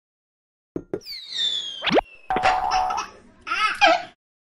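Cartoon sound effects of an animated studio logo sting: two quick pops, a long falling whistle, a fast rising boing, then bubbly, wobbling chirps that stop at the end.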